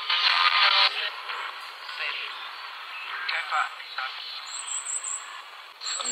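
Spirit box sweeping radio stations through its small speaker. A loud burst of static comes in the first second, then a steady hiss broken by brief chopped snatches of voice, one of which the listener hears as "go get back".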